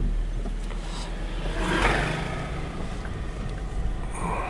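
A motor scooter passing close by the car: its engine noise swells to a peak about two seconds in and fades away. Underneath is the steady low hum of the car's own engine, heard from inside the cabin.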